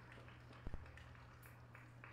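Near silence: a faint steady low hum, with one soft knock about two-thirds of a second in.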